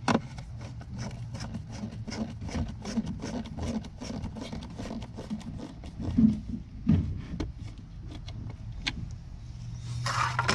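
A hand screwdriver turning a screw on a spa-pack heater assembly, with a quick run of even clicks, about four a second, that thins out after about four seconds. A low steady hum runs underneath.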